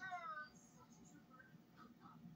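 A short meow-like cry, falling in pitch and about half a second long, right at the start; then near silence.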